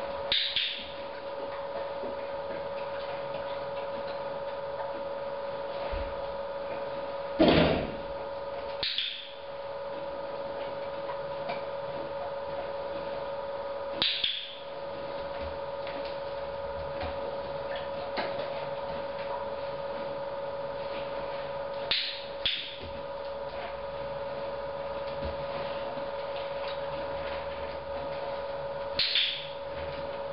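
Dog-training clicker clicked about five times, several seconds apart, each click a quick double snap marking the moment the dog touches the trainer's hand. There is a louder knock about seven seconds in, and a steady hum underneath.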